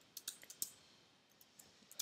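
Computer keyboard typing: a quick run of about five faint key clicks within the first second.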